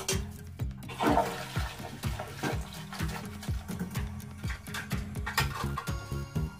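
A toilet flushing: a rush of water starting about a second in and dying away, under background music with a steady beat.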